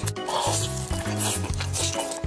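Close-miked wet, sticky chewing and mouth sounds from eating a glutinous-rice zongzi, coming in a few short bursts. Background music with a repeating low bass line runs underneath.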